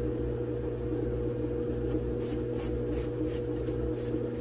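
Steady low electrical hum, with a run of soft, quick scratching strokes in the second half from a small paintbrush brushing paint onto the edge of a foam block.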